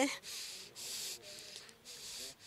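Faint, hissy breathing of a distressed woman close to a handheld microphone, several breaths of about half a second each in a pause in her speech.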